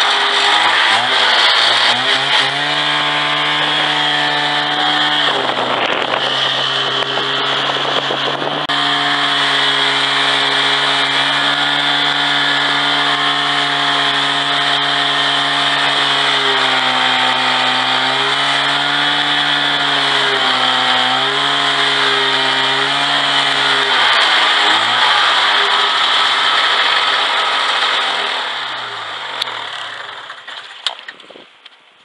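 Polaris snowmobile engine running under load as it tows a wooden beam drag along the trail, its pitch dipping and recovering a few times. A rough, noisy rush covers the engine for a few seconds from about six seconds in, and the engine winds down and fades near the end.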